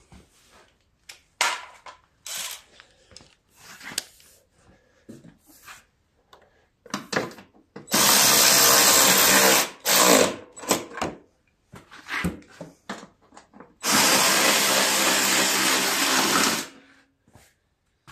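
Power drill-driver run twice in steady bursts of about two and three seconds, tightening down the bolts of the snowblower's plastic shroud, with short clicks and knocks of handling in between.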